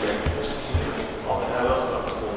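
Indistinct talk in a large room, with several dull low thumps.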